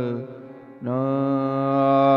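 A man singing a devotional kirtan in long, drawn-out held notes. The singing breaks off briefly shortly after the start, then resumes on a steady held note.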